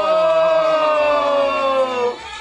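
Two voices hold one long sung note together, its pitch sliding slightly down before it breaks off right at the end.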